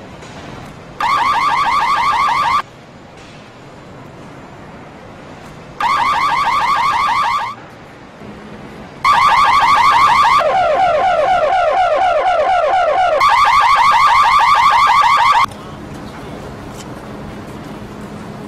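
Car alarm sounding in loud bursts of rapidly repeating electronic chirps. Two short bursts of under two seconds come first, then a longer one of about six seconds whose tone drops to a lower warble for a few seconds in the middle before going back up.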